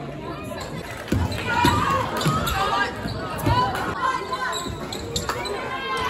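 A basketball bounced repeatedly on a hardwood gym floor, a run of dull thumps roughly half a second apart, under spectators' voices echoing in the hall.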